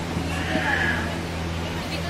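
Steady low hum with indistinct voices in the room, and a brief high-pitched voice-like sound about half a second in.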